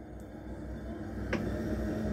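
Alsager Studio electric pottery wheel's permanent-magnet motor running as the foot pedal speeds it up toward maximum, a steady hum and tone that grows steadily louder. A brief click sounds about a second and a half in.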